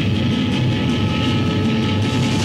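Live noise-rock drone from a homemade instrument, a metal wire stretched along a plank resting on bricks, being played by hand: a steady, grinding sound with held high tones over a low rumble.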